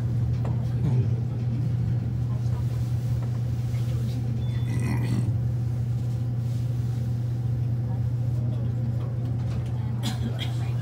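Steady low hum inside a Schindler high-speed traction elevator cab at the top landing, with faint voices about halfway through.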